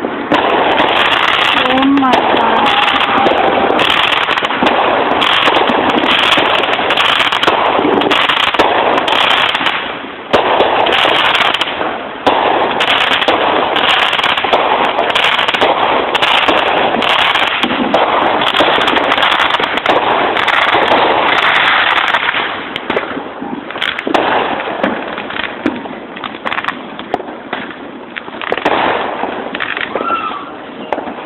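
Fireworks going off in a dense, continuous barrage of bangs and crackling, thinning to scattered, quieter pops about two-thirds of the way through.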